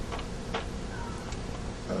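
Quiet room tone with a few faint, irregular ticks, the clearest about half a second in.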